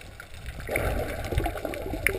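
Underwater water noise heard through a GoPro's waterproof housing as a free diver swims: a muffled, low rushing that grows louder about half a second in.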